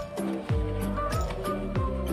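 Background music with a steady beat, bass and a melody.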